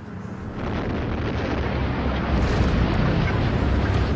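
Detonation of an explosion-welding charge set off underground: a deep, noisy rumble that swells about half a second in and keeps going.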